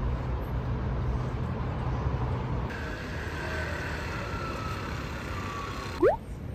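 City street ambience: a steady rumble of road traffic, with a faint whine slowly falling in pitch in the second half.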